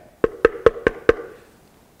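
Knuckles rapping on a plastic hard hat worn on the head: five quick knocks in about a second, each with a brief ring.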